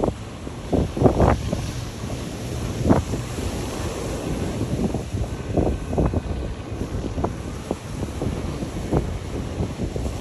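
Wind buffeting the microphone in irregular gusts, over the steady wash of surf on the shore.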